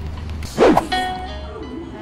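A brief whoosh sound effect about half a second in, followed by a short ringing, chime-like tone, over background music.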